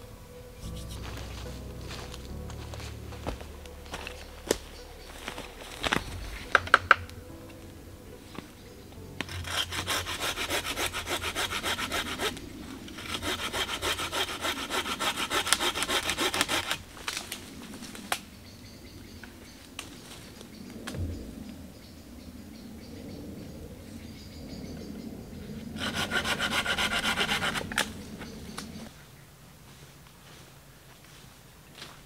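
Hand saw cutting through a tree branch in three spells of rapid back-and-forth strokes. A few sharp knocks come a few seconds before the sawing starts.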